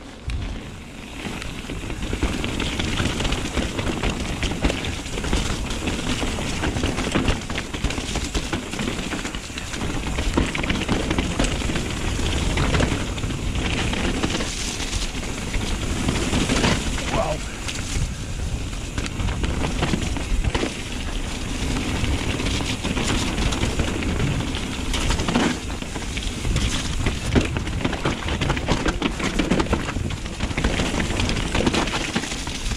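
Mountain bike descending a wet, muddy dirt trail, heard from a chest-mounted camera: continuous tyre rumble on soft ground with the bike rattling and knocking over roots and stones, picking up in the first couple of seconds.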